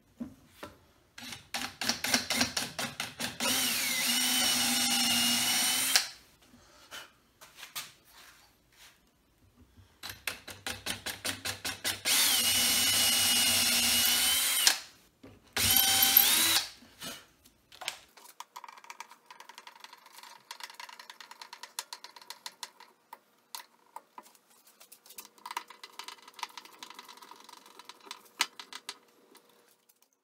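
Cordless drill tapping threads into pre-drilled holes in wood, in two long runs: each starts in short stuttering bursts, then runs steadily with a whine that dips and rises in pitch. After that comes a much quieter stretch of rapid light ticking and clicking.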